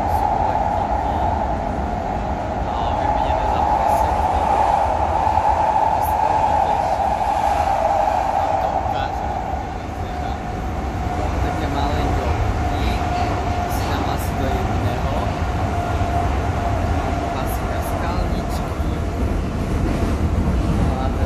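Inside a moving metro train: a steady running rumble with a whine that drops slightly in pitch about halfway through.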